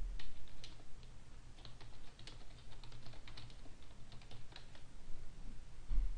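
Typing on a computer keyboard: a run of irregular keystroke clicks, several a second, as a short phrase is typed out.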